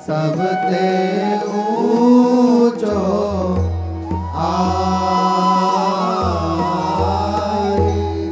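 Male voices singing a Hindi devotional verse in a chant-like melody with long held notes, accompanied by a harmonium.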